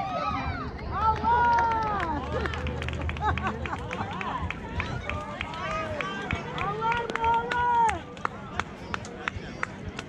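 Spectators and coaches at a kids' tee ball game shouting long, drawn-out calls, about a second in and again around seven seconds, with many sharp taps between them.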